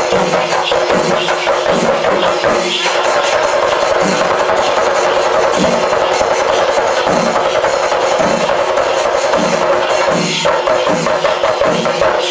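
Kerala ritual percussion music: drums beating a steady rhythm with jingling metal over a long held wind note, which breaks off briefly twice.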